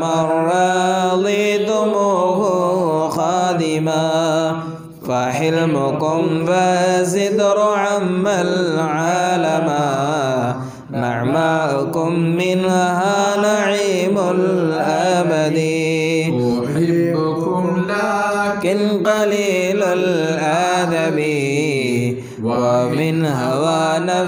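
Unaccompanied chanting of an Arabic devotional poem in long, melismatic held phrases, broken by short breaths about five, eleven and twenty-two seconds in.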